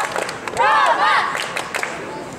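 A young wushu athlete's loud shout during a southern staff (nangun) routine: one high, drawn-out yell that rises and falls, about half a second in. A few sharp clicks sound around it.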